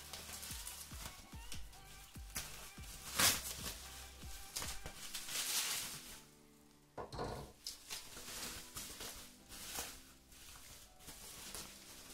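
Plastic bubble wrap rustling and crinkling in bursts as it is pulled off a boxed item by hand, over quiet background music. The sound drops out briefly just past halfway.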